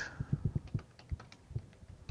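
Computer keyboard being typed on: about ten keystrokes in two seconds at an uneven pace, each a short, soft, low click.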